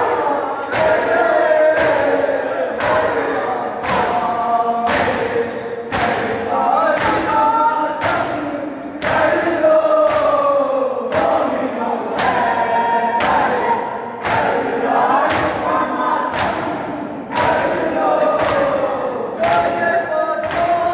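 A crowd of men chanting a noha (mourning lament) together in unison, with the even beat of many hands striking chests at once (matam), a little under two strokes a second.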